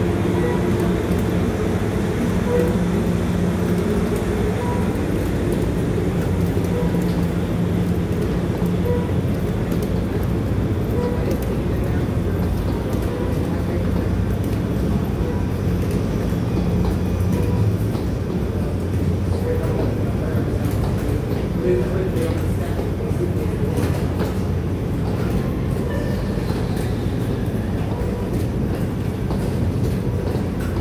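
Several wheeled suitcases rolling over a concrete floor in a steady low rumble, mixed with footsteps and background voices. A steady low hum runs beneath and fades about two-thirds of the way through.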